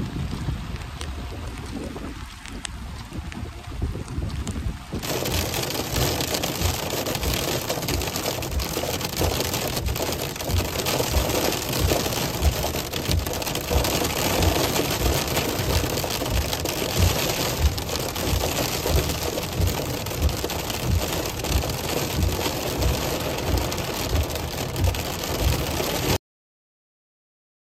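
Rain falling for about five seconds, then rain pattering on a car's windshield from inside the moving car over road noise, with low thumps about twice a second.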